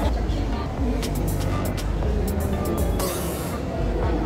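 Busy hall ambience: indistinct voices mixed with music, with short bursts of hiss at the start and about three seconds in.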